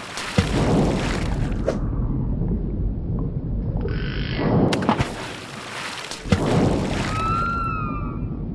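Water splashing and sloshing in two noisy bursts of about two seconds each, one at the start and one about five seconds in, over a low rumble. A few short whistle-like tones sound near the end.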